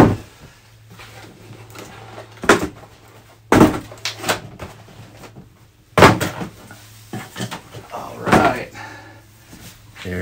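Cardboard packaging and an RC buggy being handled on a tabletop: several sharp knocks and thumps with brief rattles, the loudest about six seconds in as the buggy is lifted out of its box and set down. A faint steady low hum runs underneath.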